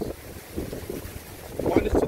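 Wind buffeting the microphone, a low, uneven rumble; a man's voice starts near the end.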